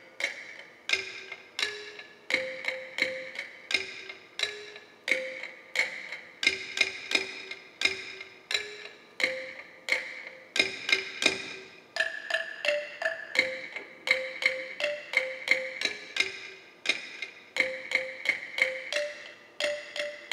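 Percussion music of struck, ringing pitched instruments, such as metal or wood, playing a steady repeating pattern of a few notes at about two to three strikes a second. A higher note joins the pattern about halfway through.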